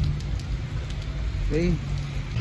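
Steady rain falling, with a few light drop ticks over a steady low hum of a car engine idling.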